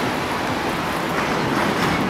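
Steady, even street traffic noise from passing vehicles, with no single event standing out.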